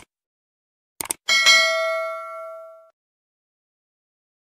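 Subscribe-button animation sound effect: a short mouse click at the start and a quick double click about a second in, then a notification bell ding that rings out for about a second and a half.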